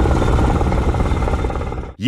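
Armoured military vehicles driving across open ground: a loud, steady low engine rumble with a noisy edge, which cuts off abruptly at the end.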